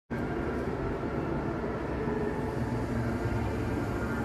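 Steady rumbling ambience of a station platform hall, with a train standing at the platform.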